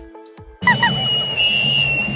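Dance music with a steady beat cuts off about half a second in. A loud, long, steady finger whistle takes over, held over the noise of a street crowd.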